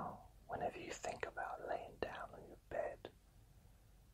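A man whispering a short phrase, his words breaking off about three seconds in.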